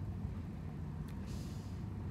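Steady low outdoor background rumble, with a brief soft hiss a little over a second in.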